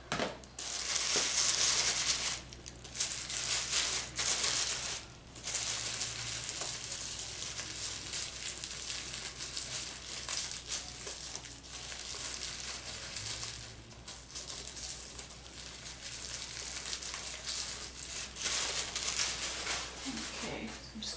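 Tissue paper crinkling and rustling as it is handled and stuffed into a gift basket, in long stretches broken by a few brief pauses.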